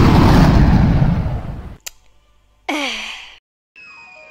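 Cartoon sound effects: the rumbling tail of an explosion fades out, then a short vocal sigh falls in pitch. A sliding tone starts near the end.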